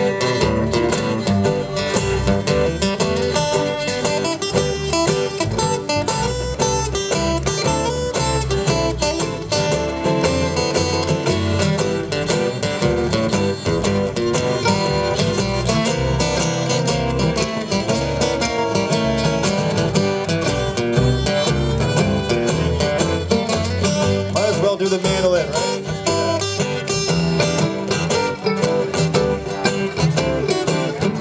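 Live acoustic bluegrass-country band playing an instrumental break with no singing: an acoustic guitar takes the lead, picking runs over mandolin and strummed rhythm guitar.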